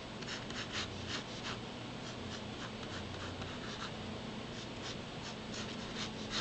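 Mechanical pencil drawing lines on paper: a run of short scratchy strokes in the first second and a half, fewer in the middle, and more again near the end, over a steady low hum.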